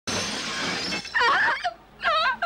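A loud noisy crash lasting about a second, then a woman's high wailing cry as she sobs.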